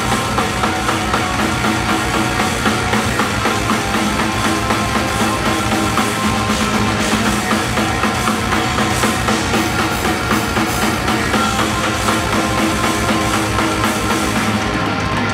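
A live rock band playing loud: electric guitars and bass over a drum kit keeping a steady fast beat.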